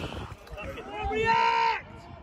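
A person's voice shouting one long, held call at a steady pitch, starting about a second in and lasting most of a second, after a shorter bit of voice just before it.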